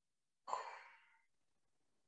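A woman's short, breathy sigh about half a second in, fading away within about half a second.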